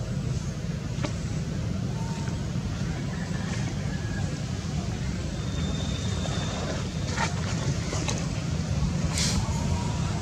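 Steady low outdoor rumble, like distant traffic, with a few faint clicks and short hissy bursts. There is a brief high thin tone about midway.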